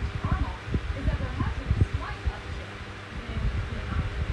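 Comfort Zone 8-inch high-velocity fan running, its airstream buffeting the microphone in irregular low rumbles over a faint steady motor hum.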